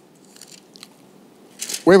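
A pause with faint room tone and a few small, faint clicks, then a man's voice starting to speak near the end.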